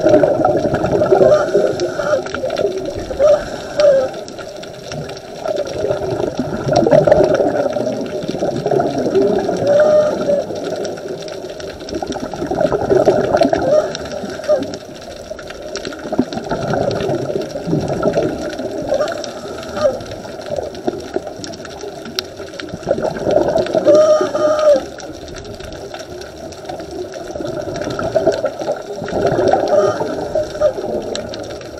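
Scuba diver breathing through a regulator underwater, the exhaled bubbles gurgling and rumbling in swells every few seconds.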